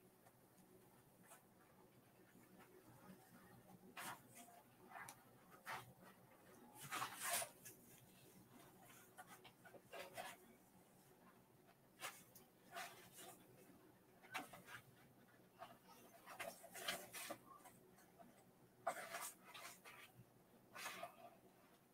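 Scissors cutting through a paper print by hand, in short, irregular snips with pauses between them.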